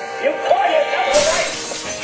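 A voice with swooping pitch over music, then a sudden hiss-like burst of noise just past the middle that carries on to the end, the kind of sound a shattering crash makes.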